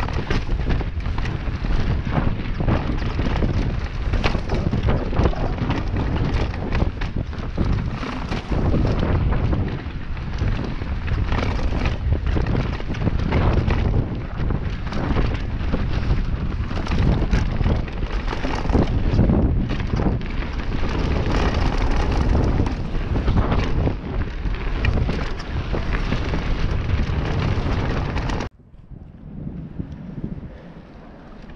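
Mountain bike riding fast down a dirt forest trail, heard from the rider's camera: heavy wind buffeting on the microphone over a deep rumble of tyres on the ground, with frequent knocks and rattles from the bumps. It cuts off abruptly near the end, giving way to much quieter surroundings.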